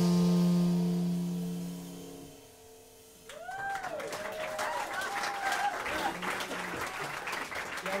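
A jazz quartet's last chord rings out and fades away over about two seconds. After a brief hush, the audience bursts into applause with whoops and cheers, starting a little over three seconds in.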